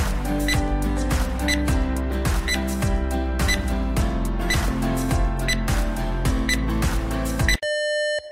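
Background music with a short tick about once a second, keeping time with a countdown timer. Near the end the music cuts off suddenly and a steady electronic beep begins, signalling that time is up.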